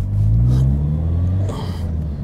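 Toyota Celica GT-Four's turbocharged four-cylinder engine heard from inside the cabin, pulling under acceleration with its note rising. About a second and a half in it breaks off briefly, with a short hiss, and comes back at a lower note, as at a gear change.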